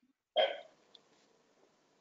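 A single short throat noise from a person, like a small hiccup or clearing of the throat, about a third of a second in and dying away quickly, then a faint tick; otherwise near silence.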